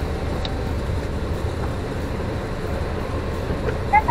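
Steady low rumble of a Daihatsu Move (L175) kei car's engine and tyres, heard from inside the cabin as it creeps along on wet pavement.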